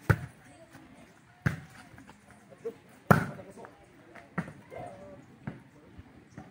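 A volleyball being hit by hands and forearms during a rally: about five sharp slaps spread over a few seconds, the loudest right at the start and about three seconds in.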